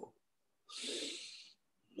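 A man drawing one audible deep breath, a hiss lasting just under a second and starting a little way in, as a demonstration of breathing low and deep.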